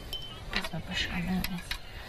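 A few light clicks and clinks of craft tools being handled, as a paintbrush is put down and a water brush pen picked up, with a brief low murmur of voice.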